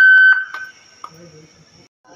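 A loud, shrill steady tone, one high pitch with overtones, lasting under a second and stopping about two-thirds of a second in. A faint click follows about a second in.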